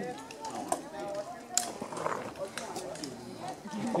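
Background voices of people talking at a distance, with a few sharp clicks.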